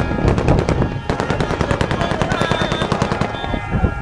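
Automatic gunfire: a rapid, unbroken run of shots that thins out near the end.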